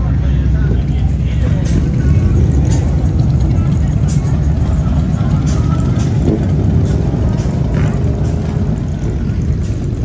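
A steady low rumble of motorcycle engines running, with voices and music mixed in.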